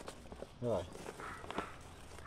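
A few faint, brief clicks and rustles, with a man briefly saying 'ó' a little after the start.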